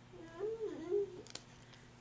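A faint, wordless vocal sound from a young child: a short, wavering whine pitched well above an adult speaking voice, lasting about a second.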